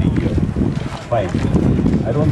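Wind buffeting the microphone, a loud low rumble, with a faint voice briefly about a second in.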